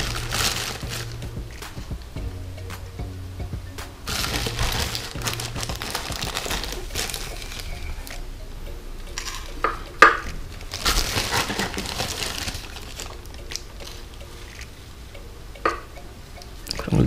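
Clear plastic bag crinkling as a small plastic cup scoops loose aquarium substrate granules, in several rustling bursts, with the gritty patter of granules dropped onto the glass floor of an empty tank. A sharp click about ten seconds in.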